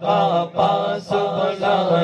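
Man singing a Punjabi devotional qalaam (naat) into a microphone, in melodic phrases about half a second long. Beneath them a second voice holds a steady chanted drone.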